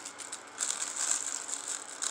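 Soft, irregular rustling and light clicking of something being handled.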